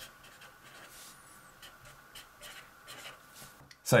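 Felt-tip marker writing: a run of short, faint, scratchy strokes.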